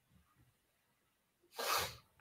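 Faint room sound, then near the end one short, sharp, sneeze-like burst of breath from a person.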